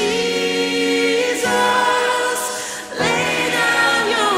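Christian worship song sung by several voices in harmony, like a choir, holding long chords that change about one and a half seconds in and again about three seconds in.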